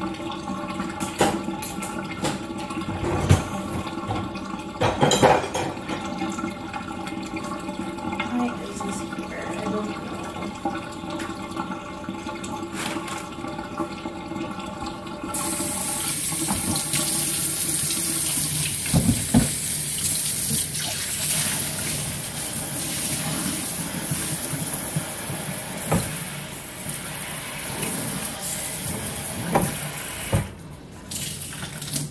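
Kitchen sink tap running as dishes are washed, with clinks and knocks of dishes and a steady hum under the first half. About halfway through the water turns up into a louder, steady hissing spray from the faucet.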